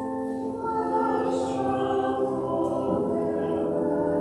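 A choir singing slow sacred music in long held chords, the notes moving together from chord to chord.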